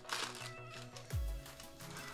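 Background music with steady bass notes and a deep falling bass swoop about a second in. At the start a foil trading-card pack rustles briefly as it is torn open.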